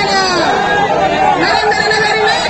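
A crowd of men talking and calling out over one another, many voices at once without a break.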